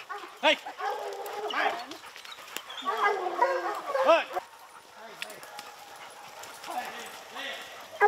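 Hunting hounds held back on leads, whining and bawling on and off, with a man's shout of "hey" about half a second in; the dogs quieten after the middle.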